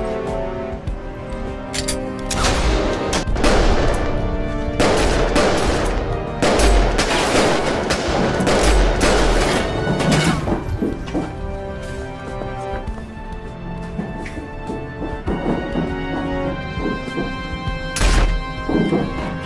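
Action-film soundtrack: steady music with volleys of gunfire over it, the shooting densest in two long spells from about two seconds in to about ten seconds in, then thinning out as the music carries on.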